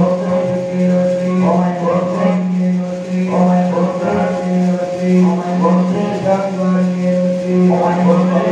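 Devotional chanting over a steady drone, sung in short repeated phrases about every one to two seconds, as in the recitation of the goddess's names during a kumkuma archana.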